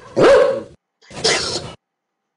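A mastiff barking twice, two woofs about a second apart, as the sound of a production-company logo ident.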